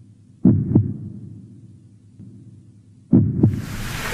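Heartbeat sound effect: two slow double thumps (lub-dub), one about half a second in and another near the end, over a faint low drone. Right after the second thump a rising whoosh swells in.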